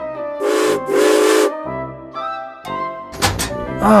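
Steam-engine whistle, two short toots with a hiss of steam, over light background music; a couple of sharp clicks follow about three seconds in.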